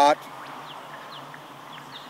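A man's word breaking off at the very start, then a low, steady background hiss with no distinct events.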